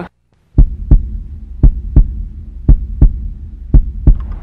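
Heartbeat sound effect: four double thumps, lub-dub, about a second apart, over a low steady hum.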